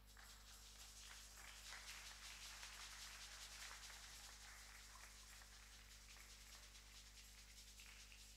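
Near silence: a steady low electrical hum and faint hiss, with a few faint rustles in the first half.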